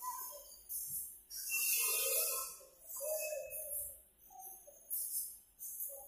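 Quiet background music: a wavering melody with high hissing strokes that come back about once a second, and no bass.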